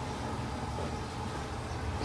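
A steady low hum under an even hiss of background noise, with no clear events.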